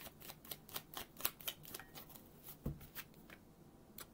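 Tarot deck being overhand-shuffled, a quick run of light card slaps about four a second that stops about two seconds in. A single low thump follows a little later.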